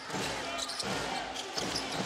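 Basketball being dribbled on a hardwood court, bouncing repeatedly, over the murmur of an arena crowd.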